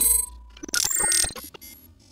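Glitchy electronic sound effect for an animated logo reveal: stuttering clicks and short buzzing bursts, one at the start and a second about three quarters of a second in, then fading.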